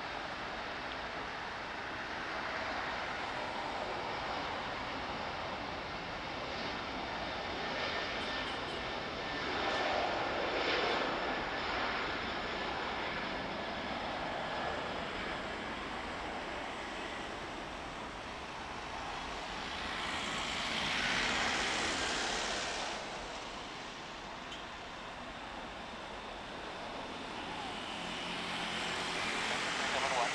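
Airbus A330 airliner's twin jet engines at takeoff thrust during the takeoff roll and climb-out: a continuous jet noise that swells a few times as the aircraft passes and lifts off, building again near the end.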